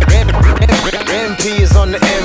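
Instrumental hip-hop beat from a producer's beat tape: hard kick drums under a sampled voice that bends up and down in pitch.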